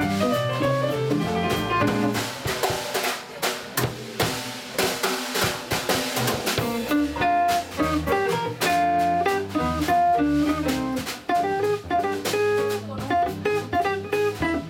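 A small live band of electric archtop guitar, upright bass, drum kit and digital piano playing. The drums are busy and to the fore in the first half, and melody lines stand out more clearly in the second half.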